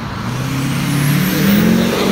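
A motor vehicle accelerating past on a city street. Its engine note climbs in pitch and grows louder, peaking near the end over tyre and traffic noise. It is loud enough to read about 81–83 dB on a roadside noise meter, under its 85 dBA limit.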